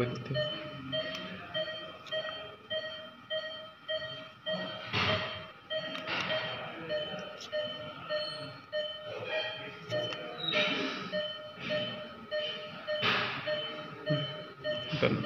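Electronic medical equipment beeping in an even rhythm, about three short beeps every two seconds, with a couple of brief louder noises about five seconds in and near the end.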